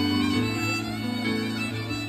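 Live band music with a fiddle playing the melody over held low bass notes.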